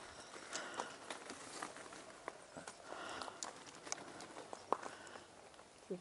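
Faint, irregular footsteps with small clicks and knocks as people move about in the dark, without a steady rhythm.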